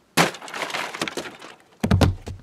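A sudden smashing crash like breaking glass, with a clatter of falling debris dying away over about a second and a half, then a second heavy thud near the end.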